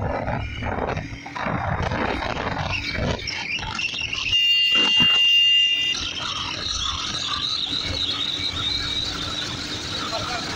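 Wind buffeting the microphone over the Honda CB Shine's single-cylinder engine as the motorcycle accelerates at speed. About four seconds in, a loud, steady high-pitched tone sounds for about a second and a half.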